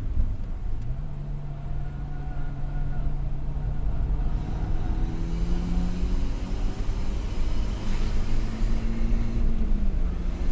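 Car engine and road rumble heard from inside the cabin as the car is driven at speed. The engine note holds steady, climbs in pitch from about four seconds in, and drops just before the end.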